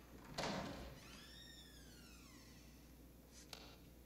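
A hospital room door being opened: a thump of the latch about half a second in, then a drawn-out hinge creak that rises and falls in pitch, and a sharp click near the end.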